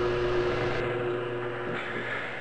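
Benchtop drill press motor running with a steady hum, fading out near the end.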